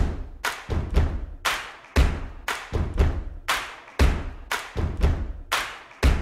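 Background music with a steady beat: drum hits about two a second, with a deep bass under them.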